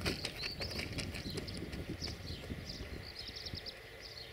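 Small birds chirping in quick high-pitched runs, over irregular clacks and a low rumble from an electric locomotive rolling slowly past.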